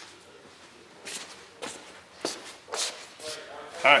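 Footsteps: about four steps half a second apart as a person walks up to the target butts.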